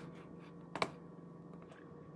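A few sharp clicks, the loudest a quick pair just under a second in, over a faint steady hum.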